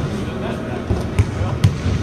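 Basketballs bouncing on a hardwood court in a large arena, heard as about three separate thumps.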